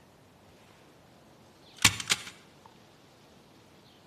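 A metal pistol dropped onto hard ground, landing with a sharp clack and then clattering twice more as it bounces, about two seconds in.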